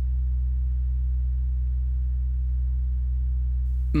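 Low, steady synthesized drone from the film's background score, a deep sustained tone that holds unchanged.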